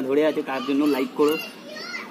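Speech: a man talking close to the microphone while holding a toddler, with the child's voice also heard.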